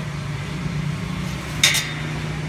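A steady low hum, and about one and a half seconds in a single sharp metallic clink with a brief ring, as a metal ruler knocks against the stainless steel basket of a centrifugal spin dryer.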